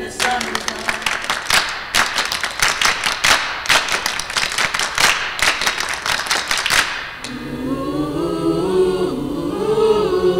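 A crowd applauding, choir members among them, for about seven seconds; then a choir starts singing.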